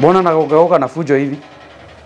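A person's voice speaking for about a second and a half, then only faint room sound.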